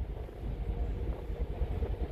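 Low, uneven rumble of wind buffeting the microphone out on the deck of a ship at sea.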